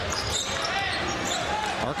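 A basketball dribbled on a hardwood court, with a bounce about half a second in, over the steady murmur of an arena crowd.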